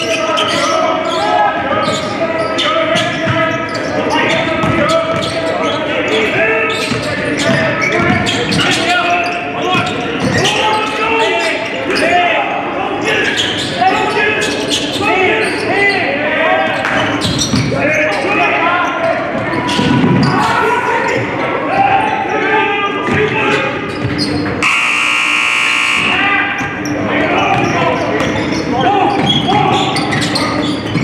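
A basketball dribbled and bouncing on a hardwood court, with players' and bench voices calling out, all echoing in a large gym. About five seconds before the end, a buzzer sounds for about a second.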